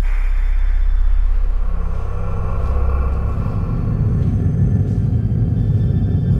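Dark, ominous background music: a deep, steady low rumbling drone that swells in the second half, opened by a falling whoosh.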